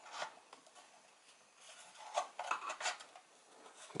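Flat-blade screwdriver scraping and prying at the edge of a subwoofer's round top cover, faint rubbing at first, then a run of small sharp clicks and scrapes in the second half as the cover's edge is worked loose.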